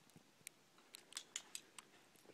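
Near quiet, with a scatter of faint short clicks that come more thickly in the second half.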